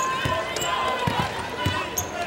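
Basketball being dribbled on a hardwood court, about two bounces a second, four in all, with arena crowd voices behind.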